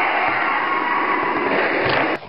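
A child making a long, loud rasping crash noise with the mouth for a toy car crash. It is steady and cuts off at the end.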